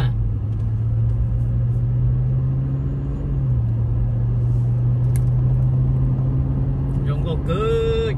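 Car engine and road noise heard from inside the cabin while driving: a steady low hum that steps down slightly about three and a half seconds in.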